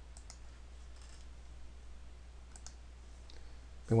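A few faint, separate clicks from a computer keyboard and mouse as code is edited, over a low steady hum.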